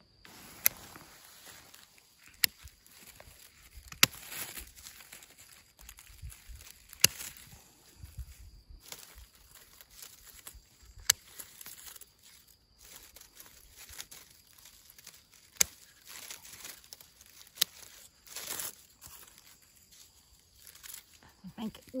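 Hand pruning shears snipping twigs and stems, about eight sharp clicks spaced a few seconds apart, with rustling of dry grass and brush between cuts.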